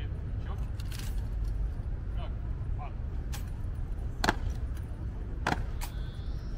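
Sharp stamps and clicks from ceremonial guards' boots and rifles on stone paving as the changing of the guard gets under way: one about a second in, then three close together near the end, over a steady low rumble and faint onlookers' voices.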